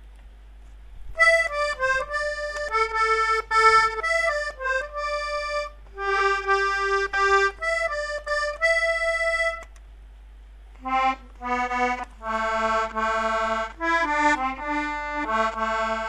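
Solo accordion playing a melody over chords. It starts about a second in, pauses for about a second past the middle, then resumes with lower bass notes.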